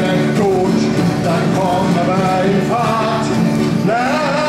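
A group of voices singing a song together in German, accompanied by an acoustic guitar.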